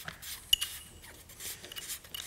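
Hands working the plastic electronic park brake module while tightening the nut on its handbrake cable. Faint rubbing and small ticks, with one sharp metallic clink about half a second in.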